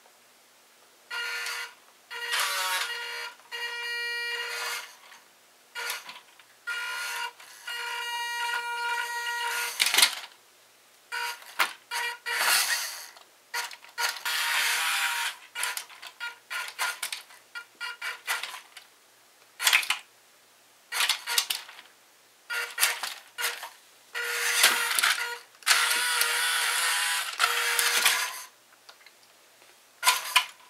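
The small brushed electric motor and gearbox of a WPL B-1 1:16 RC truck whining in many short throttle bursts, starting and stopping as it crawls over wooden wedges. A sharp knock comes about ten seconds in.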